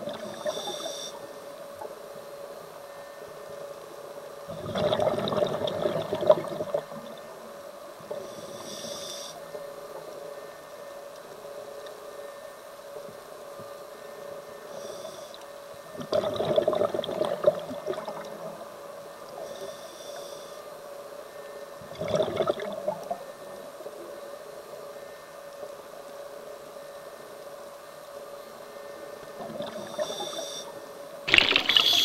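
Scuba diver breathing through a regulator underwater: three loud gurgling bursts of exhaled bubbles, each one to two seconds long, with short, fainter inhalation hisses between them.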